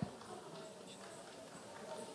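Quiet hall with faint, indistinct murmuring and a single sharp knock right at the start.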